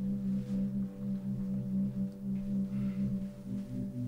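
Film score: a low, sustained musical drone holding a steady chord.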